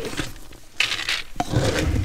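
Horse feed pellets scooped from a feed bin and poured, making a rattling rush twice, about a second in and again near the end, with a sharp knock of the scoop between.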